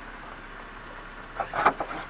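The clear plastic door of a coffee vending machine's cup compartment is pushed open by hand. It gives a short cluster of knocks and rattles about one and a half seconds in, over steady background noise.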